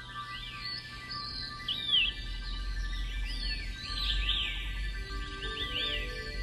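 Birds calling in a series of short, arching chirps over soft background music with long held tones. A low rumble comes in about two seconds in.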